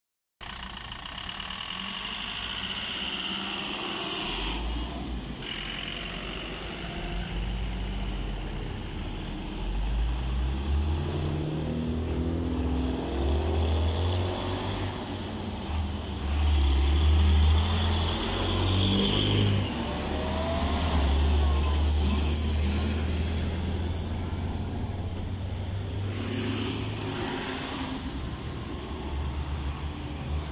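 Road traffic: heavy cargo trucks and cars passing close by, their engines rumbling low with the engine note stepping up and down. It is loudest just past the middle as a large cargo truck goes by.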